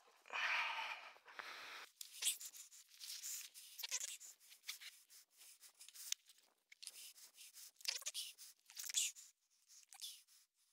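Gloved hands handling the battery and its connector in a Sur-Ron Light Bee electric dirt bike's battery bay: a brief rustle at the start, then a run of faint, irregular clicks and scrapes of plastic and metal parts.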